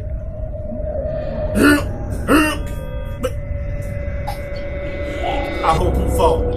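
A steady droning hum over a low rumble, broken twice, about one and a half and two and a half seconds in, by short falling cough-like voice sounds.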